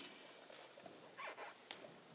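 Near silence between spoken phrases, broken by a short breath drawn close to the microphone and a small mouth click just before speech resumes.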